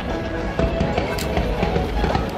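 Aerial fireworks bursting, with a few sharp cracks, over steady music.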